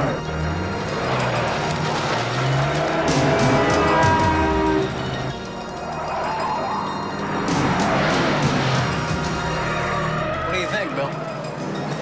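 Sports car engine revving up repeatedly as it accelerates through the gears, rising in pitch several times, under a film music score.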